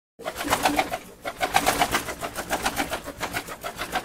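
Pigeon or dove wings flapping in a rapid flurry of wingbeats, about eight to nine a second, like a bird taking off.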